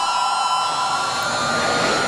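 Trailer sound-design drone: a steady whooshing hiss with two held high tones underneath, sustained as tension before a hit.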